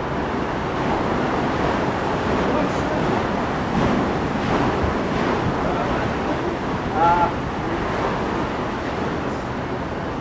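Wind buffeting the microphone over a murmur of passengers' voices on an open deck, with one short, high call about seven seconds in.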